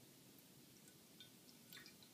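Near silence, with a few faint drips of water falling from a tilted plastic measuring cup onto a plate of water, the clearest a little before the end.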